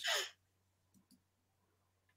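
A short breath out from a host just after speaking, in the first third of a second, then near silence with a couple of faint clicks about a second in.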